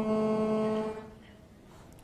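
A man's voice holding a drawn-out vowel at a steady pitch, which fades out about a second in, leaving a quiet room with a faint hum.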